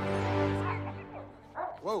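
Film soundtrack: a held chord of steady musical tones that fades away over the first second, followed near the end by a dog's short yips together with a man's "whoa".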